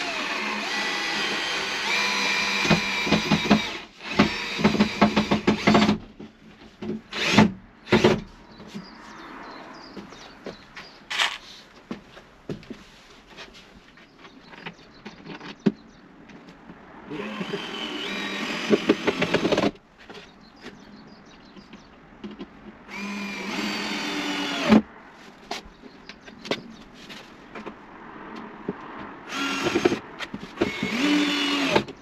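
Cordless drill driving screws into the plywood cladding of a steel-framed kitchen unit, running in about five bursts of one to four seconds each. Between bursts there are small clicks and knocks of handling.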